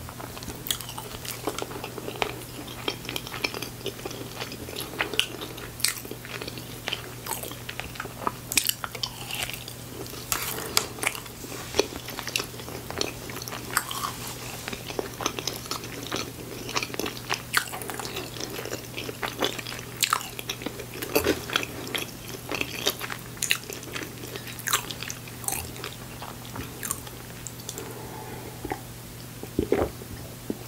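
Close-miked chewing of soft, cheese-covered chili fries: a steady run of irregular wet mouth clicks and smacks.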